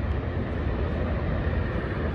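Steady low outdoor rumble with an even hiss above it, unbroken and without distinct events.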